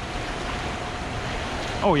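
Fast, high river current rushing and churning past a concrete dam pier: a steady wash of water noise.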